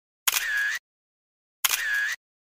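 A camera-shutter sound effect added in editing, heard twice about a second and a half apart. Each is a sharp click followed by a short tone lasting about half a second, with dead silence between.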